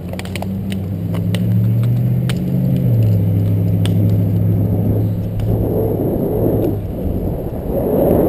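A motor vehicle's engine running close by with a steady low hum that shifts pitch slightly, over scattered sharp clicks in the first few seconds. From about five seconds in, wind buffets the microphone as the bicycle picks up speed.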